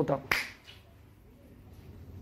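A single sharp click about a third of a second in, just after the last spoken word, then quiet room tone.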